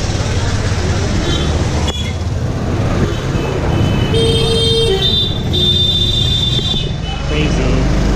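Busy street traffic noise with vehicle horns tooting: one horn about four seconds in, lasting under a second, then a higher horn held for just over a second.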